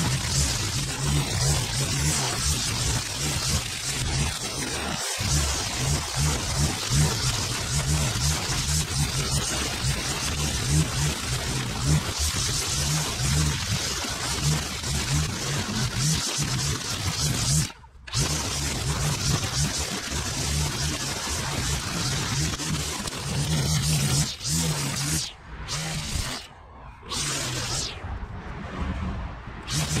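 Petrol string trimmer running at high throttle, its line cutting through long grass. The sound drops out suddenly for a moment about two-thirds of the way through, and again several times near the end.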